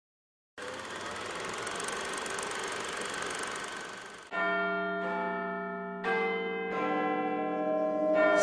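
Bells: a dense, hissy wash of ringing for about four seconds, then clear bell tones struck three times, each left ringing on.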